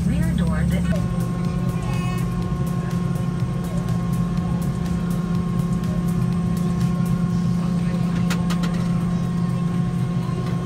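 Steady low hum of a jet airliner's cabin at the gate before pushback, from the aircraft's air and electrical systems, with a few constant higher tones running through it.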